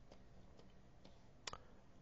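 Near silence with faint clicks of a plastic stylus tapping on a tablet screen while writing, the sharpest tap about one and a half seconds in.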